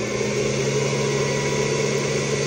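LaserPecker 3 fiber laser engraver running an engraving pass on a plastic pencil: a steady, even hiss with a faint hum underneath.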